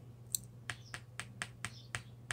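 Fingers snapping lightly over and over, about eight quick snaps at roughly four a second, while the speaker searches for the word 'transformation'.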